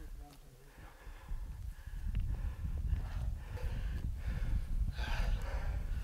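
Wind rumbling on the microphone outdoors, with hard breathing and a few muffled words near the end.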